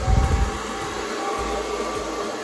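Handheld blow dryer with a comb attachment switched on and running, a steady whooshing hiss with a faint whine. A brief low rumble sounds as it starts.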